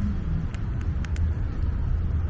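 Steady low outdoor rumble with a few faint clicks about half a second to a second in.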